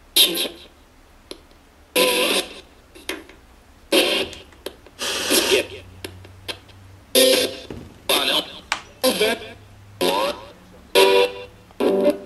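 Homemade spirit box built from Response Box parts sweeping through audio, putting out short choppy bursts of clipped voices, music and static with brief gaps between them.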